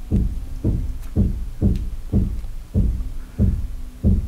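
A run of soft, low thumps, about two a second in an even rhythm.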